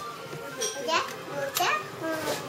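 A young child's voice making short sounds with no clear words, two of them quick upward glides in pitch about a second apart.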